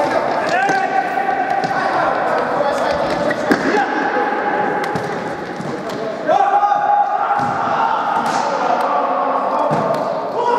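Futsal ball being kicked and bouncing on a hard indoor court, with sharp thuds among players' shouts in an echoing sports hall.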